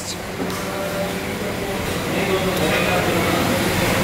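Steady low mechanical hum with faint background voices.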